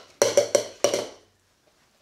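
Four sharp clacks in quick succession within the first second, a yo-yo knocking against padded MMA gloves and its string during a trick, then quiet.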